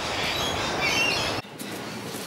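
Outdoor ambience: a steady rushing noise with high chirping birdsong over it, cut off suddenly about a second and a half in for a quieter room tone.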